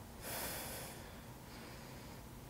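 A person's breath heard close to a body microphone: one faint, airy breath lasting under a second, starting shortly after the beginning.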